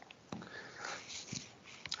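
Faint breathing and sniffing close to a microphone over mic hiss, with a few small clicks.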